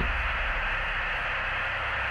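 Steady radio static hiss over a low hum, the noise bed of a dramatized radio transmission.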